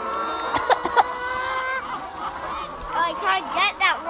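A flock of brown laying hens clucking and calling, with long drawn-out calls at first, a few sharp taps about a second in, and a quick run of short squawks near the end.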